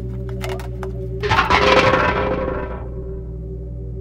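A sudden loud crash-like noise about a second in, dying away over about a second and a half, over a steady low droning score.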